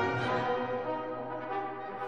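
Orchestral classical music with brass, French horn most of all, playing held notes over a steady low note.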